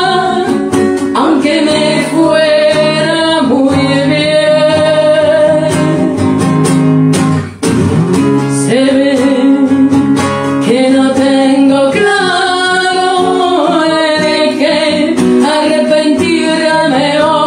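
A solo singer accompanying themself on an acoustic guitar, a sung melody over plucked and strummed chords, with a brief break about halfway through.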